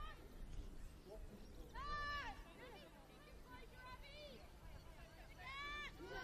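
Faint shouted calls from players on a football pitch: one long call about two seconds in, another near the end, and quieter calls between, over a low steady background hum.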